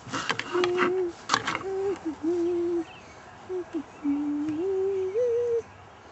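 A man humming a slow tune in long held notes that step up in pitch toward the end. In the first second and a half there are sharp clicks and scrapes of a knife and fork against a plate.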